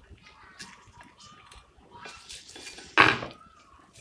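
Table knife scraping and tapping as it spreads filling over a split bread roll on a ceramic plate, then a loud, short clatter of the knife against the plate about three seconds in.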